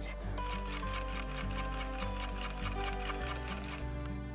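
Background music, with a Brother Innov-is computerised sewing machine stitching under it in a fast, even run of needle strokes. It is doing free-motion stitching with the feed dogs lowered.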